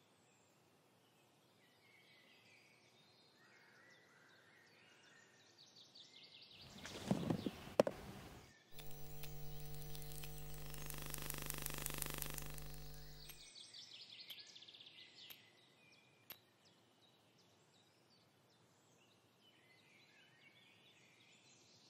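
Quiet forest ambience with faint birdsong. About seven seconds in comes a rustling burst with a few sharp clicks, then a steady electrical hum with a buzzy edge that holds for about five seconds and fades away.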